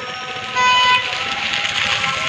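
Street noise with a vehicle horn sounding, loudest from about half a second to one second in.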